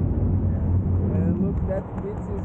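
Wind rushing over the microphone of a paraglider in flight, a steady low rumble, with a voice talking under it for about half a second midway.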